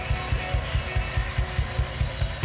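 Live funk band playing an instrumental groove: drum kit and electric guitar over a steady low beat of about four to five hits a second.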